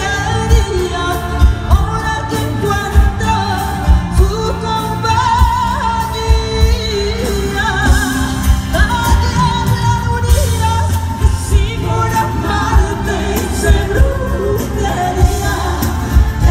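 Female singer singing live with a full band, amplified over a concert PA in a large hall, a steady drum beat underneath.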